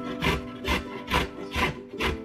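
Fresh ginger root rasped down a stainless steel box grater in repeated strokes, about two a second. Steady background music plays underneath.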